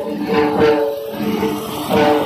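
Music: a string instrument plays a short melodic phrase, repeated over and over, with steady held notes and a regular pulse.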